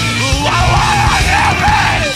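Loud post-hardcore rock song: distorted guitars and drums with a yelled vocal that bends up and down in pitch.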